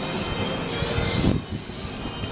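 Steady outdoor city noise: a continuous rumble, with a brief swell of low rumble a little past the middle.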